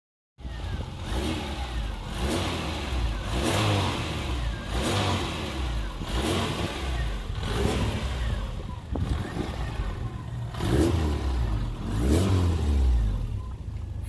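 1993 Fiat Uno SCR's engine revved repeatedly while the car stands still, about nine blips of the throttle, each rising and falling back, roughly one every second and a half.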